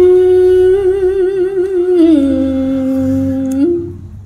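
A woman singing Khmer smot, the unaccompanied Buddhist chanted recitation: one long held note with vibrato that steps down to a lower held note about halfway through, then breaks off shortly before the end.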